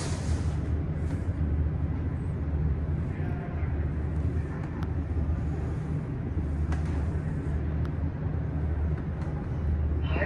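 Otis rope-hoisted scenic elevator car travelling upward, heard from inside the car as a steady low hum and rumble with a few faint ticks.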